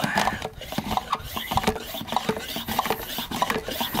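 Hand pump of a plastic weed-killer jug sprayer being worked to build pressure: a run of short, uneven plastic rubbing strokes.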